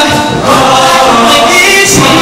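A show choir singing loudly as a full ensemble, the sound dipping briefly about a quarter of a second in.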